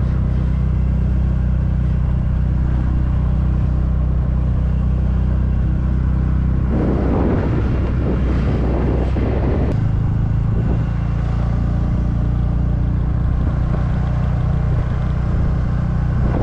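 Motorcycle engine running steadily while riding, with wind rushing over the camera. About seven seconds in, a louder rushing noise lasts for about three seconds, and the engine note shifts slightly around ten seconds in.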